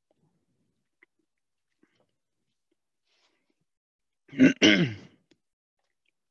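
A man clearing his throat once, a short two-part rasp about four and a half seconds in.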